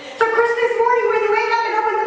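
A woman's voice through a handheld microphone and PA, drawn out in long held tones at a steady, fairly high pitch. It starts a moment in, after a brief lull.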